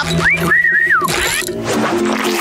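A cartoon whistle calling a pet. A quick rising note leads into a held high note that falls away about a second in, followed by a shorter rising whistle.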